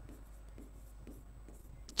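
Faint scratching and tapping of chalk writing on a chalkboard, in short strokes.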